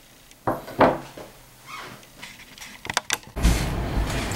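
Handling knocks and clatter, two sharp ones near the start and a few light clicks later, then a steady low hum that starts about three and a half seconds in.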